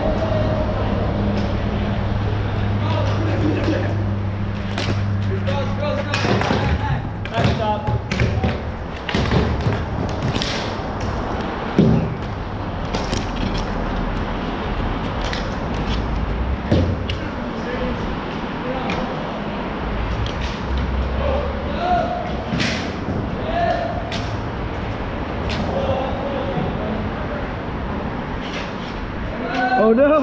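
Pickup hockey on a plastic sport-court rink, heard from the goalie's position: repeated sharp clacks and knocks of sticks on the floor and shots hitting the boards, with players' voices in the background. A steady low drone sits under the first several seconds.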